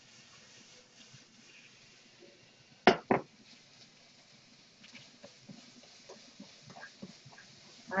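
Two sharp knocks a fraction of a second apart, a wok being set down on an induction hob, followed by a few faint small clicks.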